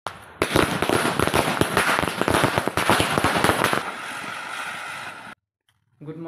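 Fireworks crackling: a rapid, dense run of sharp cracks for about three and a half seconds, thinning into a steadier fizzing hiss, then cut off suddenly.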